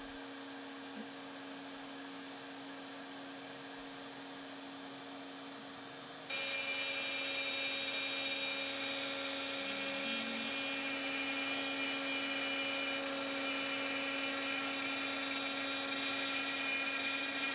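X-Carve CNC router spindle running with a steady hum. About six seconds in it jumps suddenly to a louder, higher-pitched whine that holds steady.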